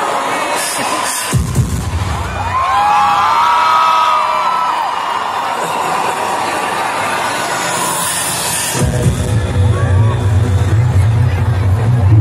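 Arena concert crowd cheering and screaming over loud amplified music. A heavy bass beat comes in suddenly about a second and a half in and grows heavier near nine seconds.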